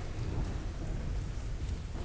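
Low, steady rumble of room noise in a large church sanctuary, with faint rustling and a few soft clicks.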